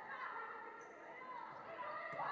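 Faint sound of a volleyball rally in a large gymnasium: distant players' voices and court noise.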